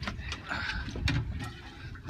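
A few irregular clicks and knocks from a heavy fishing rod and reel under load while a hooked goliath grouper runs, over a low rumble.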